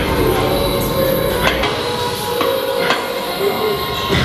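Pec deck machine in use, its weight stack knocking a few times at irregular intervals during reps, over steady background music.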